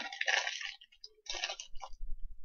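Crinkling of a clear plastic candy bag being handled, in two bursts, the first near the start and the second a little past halfway.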